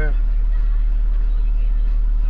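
Delivery truck's engine idling, a steady low rumble heard inside the cab.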